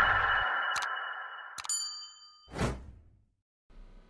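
Logo-intro sound effects: a fading whoosh with a low rumble, a sharp click just under a second in, a bright ding with a ringing tail at about 1.7 s, and a short whoosh at about 2.6 s, matching a subscribe-button click animation.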